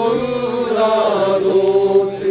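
Voices chanting a ritual rice-planting song in long, held notes that slide slowly from one pitch to the next.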